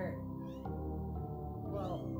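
A cat meowing twice, short falling calls just after the start and near the end, over a bed of steady ambient music.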